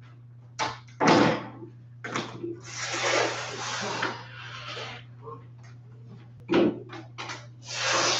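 Handling noises at a worktable: several short knocks and rustles, with a longer rushing rasp about three seconds in that lasts over a second, all over a steady low electrical hum.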